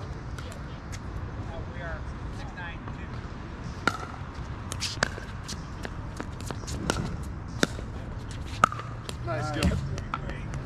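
Pickleball rally: paddles striking the plastic ball with sharp pops. The pops are faint at first, then come loud about four seconds in and go on roughly once a second, five in all, until near the end.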